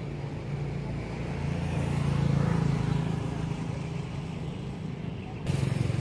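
A motor vehicle engine running, a low hum that swells about two seconds in and fades again, with the sound changing abruptly near the end.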